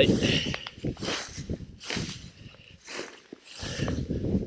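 Dry straw mulch rustling and crackling in irregular bursts as it is walked on barefoot and pulled aside by hand.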